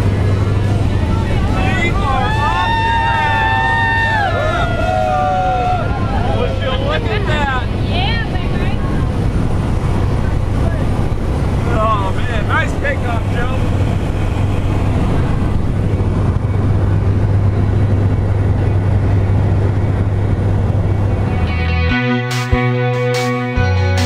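Cabin noise of a single-engine light aircraft climbing with its door open: the engine's steady low drone and rushing air throughout, with a few brief, unclear raised voices over it in the first half.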